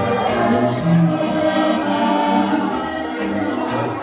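Accordion dance music with keyboard backing and a steady beat of about two beats a second.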